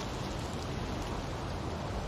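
Steady, even hiss of outdoor ambience with no distinct sounds standing out.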